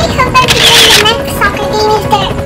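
A very high-pitched character voice talking, its words not made out.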